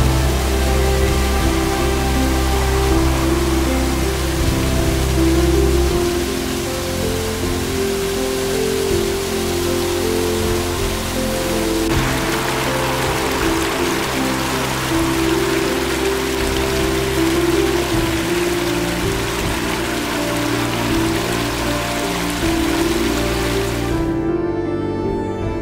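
Background music with held notes over the steady rush of a waterfall and then a fast mountain stream. The water noise gets louder about halfway through.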